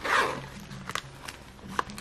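A tan zip-around vegan leather wallet being handled and opened: a short rush of noise at the start, then a few light clicks.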